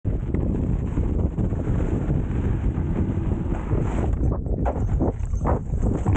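Wind buffeting the microphone while riding an electric unicycle fast down a dirt trail, a steady low rumble. From about four seconds in, a run of sharp scrapes and knocks as the tyre slides through loose dirt in a berm, throwing up dust.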